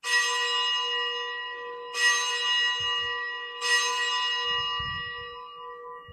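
A bell rung at the elevation of the chalice after the consecration at Mass: three clear strokes about two seconds apart, each ringing on and slowly fading.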